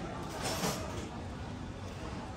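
Outdoor street ambience: a steady low rumble with a brief rushing swish about half a second in.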